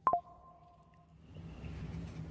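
A single sharp click with a faint two-pitch ringing tone that dies away within about a second, followed by a low steady hum.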